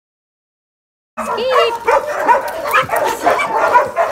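Several dogs yipping, whining and barking excitedly, starting about a second in after silence, eager for food treats.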